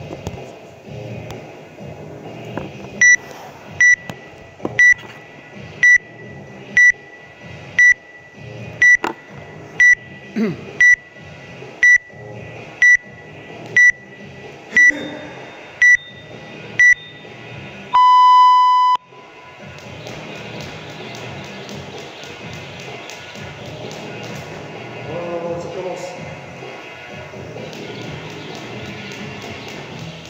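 Workout timer counting down: a row of short, high beeps, one a second, then a single longer, lower beep that signals the start of the workout. After it, background music carries on.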